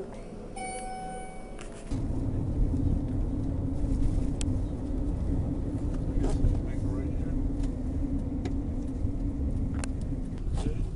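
An elevator chime sounds once, a single steady ringing tone lasting about a second. About two seconds in, it gives way to the steady low rumble and hum of a car's cabin while driving.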